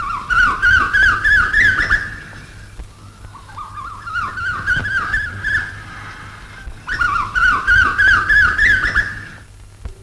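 A high, whistled, bird-like call: runs of quick upward-sweeping notes in three phrases of two to three seconds each, over a steady low hum.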